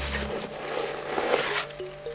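Steady soft rustling and scraping as a vegan platform boot is handled and crumpled packing stuffing is pulled from inside it; the stuffing is what kept the foot from going in.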